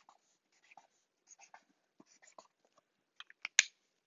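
Pen drawing on paper: faint, scattered light scratches and squeaks of the tip, then a few sharper clicks a little after three seconds in, the loudest a single sharp click near the end.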